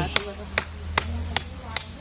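A knife chopping into the woody base of an old cassava stem: five sharp, evenly spaced strikes, about two and a half a second.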